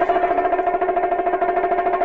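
Latin dance band starting up: a chord held steadily by the band over a rapid, even bongo roll.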